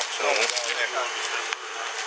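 Voices of people talking over a steady outdoor hiss, with a single sharp click about one and a half seconds in.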